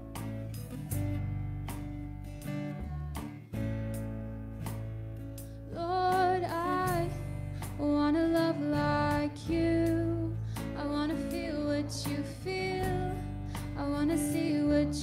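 Live worship band playing: strummed acoustic guitar, electric bass and drums. A woman starts singing lead about six seconds in.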